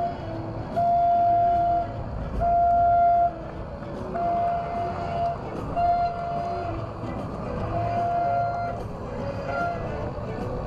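Horns sounding in repeated blasts of about a second each, about six times with short gaps between, over a steady low rumble.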